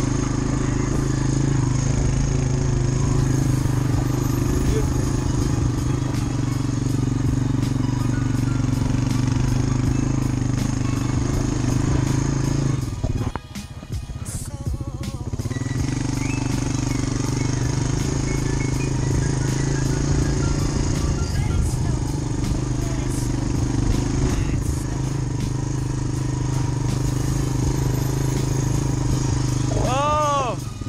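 Four-wheeler (ATV) engine running steadily under throttle, easing off briefly about halfway through and then picking back up.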